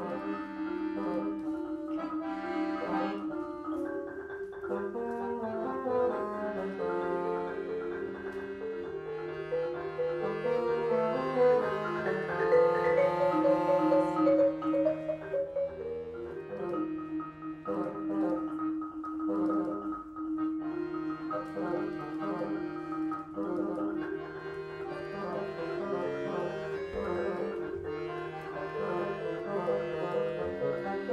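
Live chamber trio of marimba, piano accordion and bassoon playing: quick marimba strokes over held accordion chords and a bassoon line, growing fullest and loudest about halfway through before easing back.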